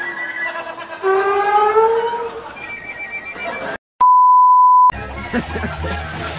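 Brass-heavy orchestral cartoon music from a TV, with a brass note sliding upward in the middle. It cuts off abruptly, and a steady high beep follows for about a second. Then other busy cartoon music starts.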